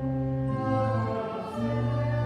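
Slow sacred choral music: held chords that change about once a second, with voices singing.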